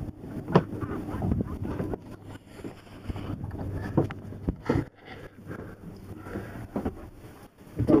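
Bumps, knocks and handling noise of someone climbing down into a small sailboat's cabin with a camera, with a few sharp knocks about half a second in, around four to five seconds in and near the end.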